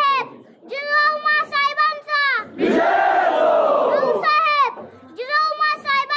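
A single high voice chants a drawn-out ceremonial garad call that falls in pitch at its end. About two and a half seconds in, a crowd answers with a mass shout lasting about a second and a half, then the lone voice calls again twice.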